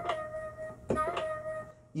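Flute-sounding software lead instrument played from a MIDI keyboard: a held note, then a second note about a second in that is bent briefly upward with the pitch wheel and back, the bend used to reach a quarter-tone for a Middle Eastern inflection.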